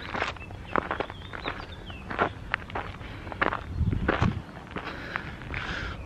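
Footsteps of a person walking in trainers along a path, a run of short, irregular steps.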